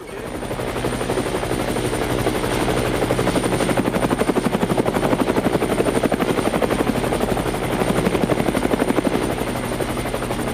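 Small helicopter running on the ground, its rotor beating in a rapid, even pulse with a thin high whine above it. The sound fades in over the first second and then holds steady.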